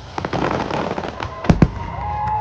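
Aerial fireworks in a dense barrage: a steady rattle of crackling bursts, then two loud booms in quick succession about a second and a half in.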